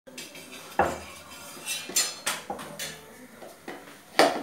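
Kitchen clatter: a string of uneven knocks and clinks, about six in four seconds, the first the loudest, as a small child handles a wooden rolling pin and utensils on a stone rolling board while rolling out roti.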